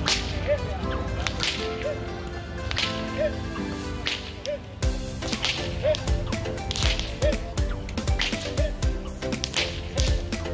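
A whip cracking repeatedly, with sharp single cracks every second or two, over upbeat background music.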